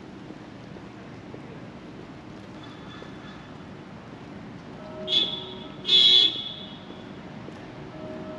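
A car horn sounding twice just past the middle: a brief toot, then a louder, slightly longer honk, over a steady outdoor background hum.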